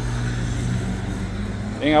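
A vehicle engine idling, a steady low hum without change, with a word of speech at the very end.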